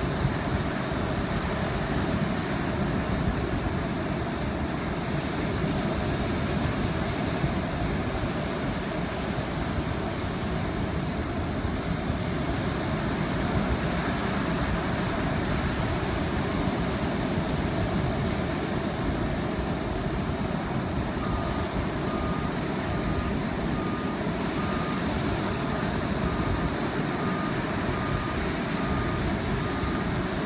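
Surf breaking and washing through shallow water, with wind buffeting the microphone in a steady low rumble. A faint short beep starts repeating about once a second roughly two-thirds of the way through.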